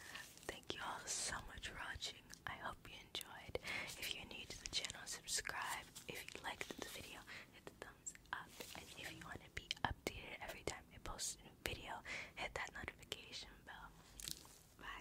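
A woman whispering close to the microphone, with scattered soft clicks.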